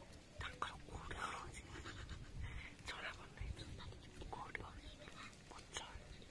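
Hushed human voices, whispering in short, scattered bursts.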